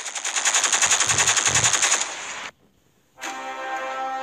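Rapid automatic gunfire, a machine-gun burst lasting about two seconds and then trailing off. After a short silent gap, music with held notes begins.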